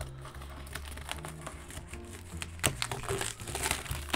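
Cellophane wrapping crinkling in scattered crackles as it is peeled off a cardboard box, with the sharpest crackles about two and a half seconds in and near the end. Quiet background music with a steady bass line runs underneath.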